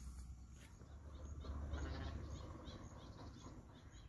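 Faint birds calling outdoors: a short high note repeats about three times a second, and a louder call comes about a second and a half in, over a low steady rumble.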